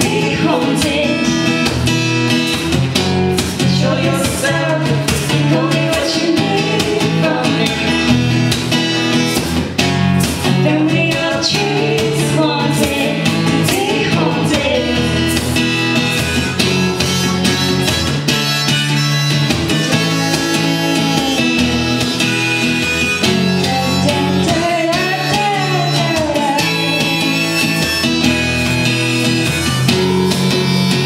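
Acoustic guitar strummed steadily under sung vocals, a live acoustic song playing without a break.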